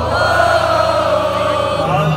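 Arena concert audience singing along, many voices holding one long note together over the live band's music. The note fades just before the end.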